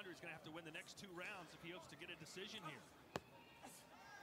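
Faint voice of the fight broadcast's own commentary, then one sharp smack a little after three seconds in, typical of a kickboxing strike landing on a glove or body.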